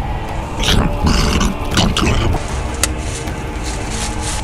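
A rough, growl-like vocal sound in a couple of bursts for about two seconds, starting just after the beginning, over steady background music, with a single click near the end.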